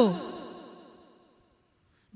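A woman's amplified voice ends a phrase on a falling pitch, and a fading echo trails after it, dying away over about a second and a half into near silence.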